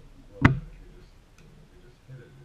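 A single sharp knock about half a second in, followed by a faint click about a second later.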